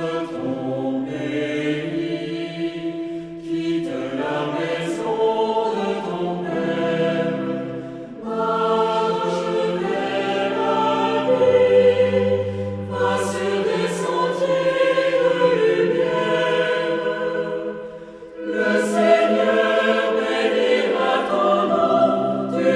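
Vocal ensemble singing a French sacred song in several voices, in phrases broken by short breaths about 4, 8 and 18 seconds in.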